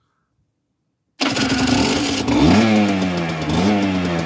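Aprilia RS 125's unrestricted Rotax 123 two-stroke single-cylinder engine starting suddenly about a second in, then running with two brief revs that rise and fall in pitch.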